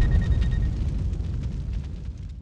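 Tail of a deep boom sound effect from an animated logo intro: a low rumble that fades away steadily.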